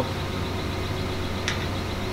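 Steady low mechanical hum of shop equipment, with one faint click about one and a half seconds in.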